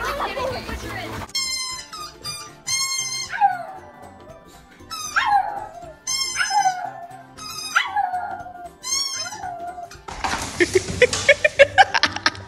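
Pug giving a series of short howls, each sliding down in pitch, in answer to high squeaks from a toy ball held out to it. Laughter comes in near the end.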